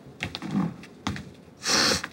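Several soft clicks and knocks, then a loud, short sniff near the end from a woman crying into a tissue.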